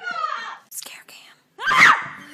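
A person's voice wailing with gliding pitch, trailing off about half a second in. After a brief silence, a short loud vocal cry rises near the end.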